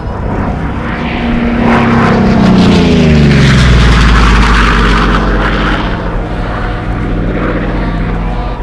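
Single-engine propeller aircraft making a low pass. Its engine and propeller drone swells, drops in pitch as the plane goes by, and is loudest about halfway through.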